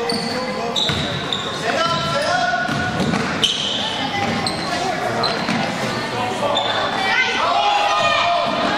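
Basketball game in a gymnasium: the ball bouncing on the hardwood floor amid players and spectators calling out, all echoing in the large hall.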